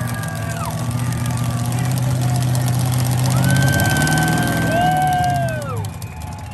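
Burnout car's engine held at high revs with the rear tyres spinning. The revs dip under a second in, climb back and hold, then fall away sharply near the end as the throttle comes off.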